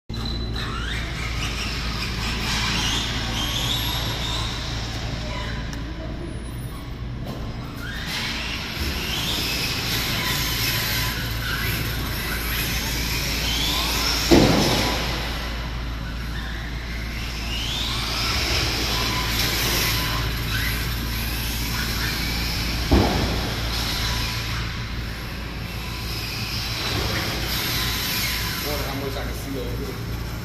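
Electric RC car running on a smooth indoor track, its motor whining and rising in pitch each time it accelerates, several times over. Two sharp knocks stand out, about halfway through and again near the end.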